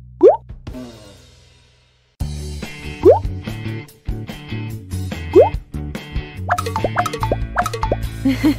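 Cartoon "plop" sound effects, quick upward pitch swoops, laid over cheerful background music. One swoop comes right at the start and fades out, the music stops briefly and comes back at about two seconds, then two more swoops sound and a quick run of short rising blips follows near the end.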